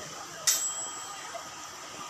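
A single sharp clink about half a second in, ringing briefly on one high tone and fading within half a second, over steady faint room noise.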